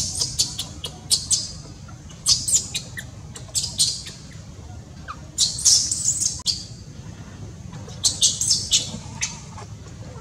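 Clusters of short, high-pitched animal squeaks or chirps that recur every second or two, the longest run about halfway through, over a steady low hum.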